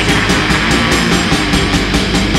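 Black metal recording: dense, loud distorted electric guitars over fast drumming, with cymbals struck in a rapid, even pulse.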